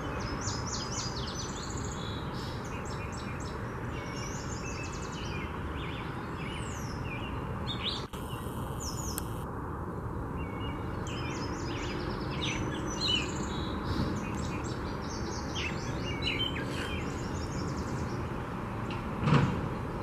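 Several songbirds chirping and trilling in short high phrases over a steady low background hum, with a brief thump near the end.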